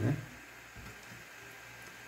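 Quiet room tone, a faint steady hiss, following a man's short spoken word at the very start.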